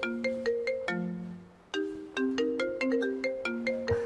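Mobile phone ringtone: a marimba-like melody of quick, bright notes repeating in short phrases, with a brief break about two seconds in. It signals an incoming call.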